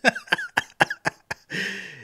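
A man laughing: a quick run of short breathy laugh bursts, about six a second, then a longer wheezy breath near the end.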